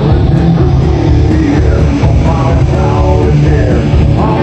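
Live hard rock band playing loud and steady: electric guitar and bass guitar over a drum kit.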